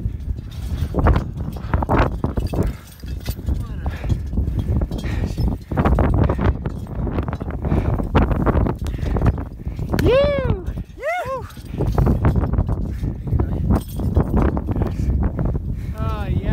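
Wind buffeting and rumbling on a phone's microphone on an exposed snowy summit, with handling noise. About ten seconds in, a climber gives two whooping shouts in quick succession.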